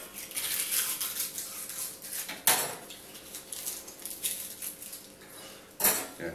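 Abrasive paper rasping in short strokes inside a copper pipe fitting, with two sharp metallic clinks of copper against the metal wire rack, one about two and a half seconds in and a louder one near the end.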